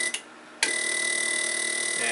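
A low-impedance fuel injector buzzes steadily as a peak-and-hold injector driver pulses it. The buzz cuts out for about half a second, with a click at each end, as the channel selector switch is turned to the next channel, then comes back.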